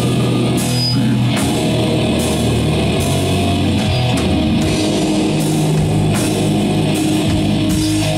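Doom metal band playing live: heavy distorted electric guitars and bass holding long low chords that change every second or two, over a drum kit with cymbal crashes about once a second.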